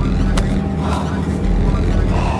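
City street traffic with a diesel-electric hybrid bus idling close by: a steady low hum. A single sharp click comes about half a second in.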